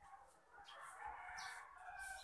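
A faint, distant drawn-out animal call lasting about a second and a half.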